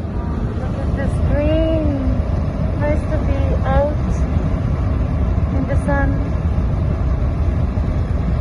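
Car driving at road speed: a steady low rumble of engine and tyres heard from inside the cabin.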